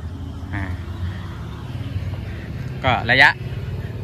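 A man's voice: a short 'ah' about half a second in and a brief spoken phrase near the three-second mark, over a steady low rumble.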